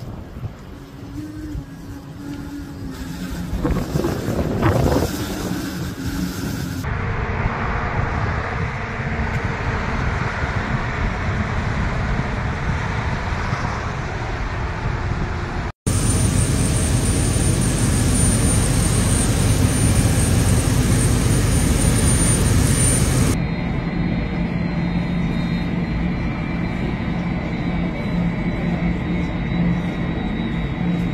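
Wind noise on the microphone in a snowstorm, changing abruptly between clips, then jet aircraft running at an airport: a loud steady rush with a high whine beside a parked regional jet, and then a taxiing twin-engine airliner's engines with a lower steady rush and thin whine.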